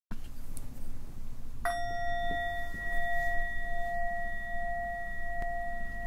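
A meditation bell, struck once about a second and a half in, its clear tone ringing on steadily with hardly any fading.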